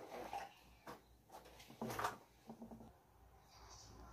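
Faint handling of a crocheted cotton rug and its yarn, with a short scissors snip about halfway through as the yarn is cut at the finish.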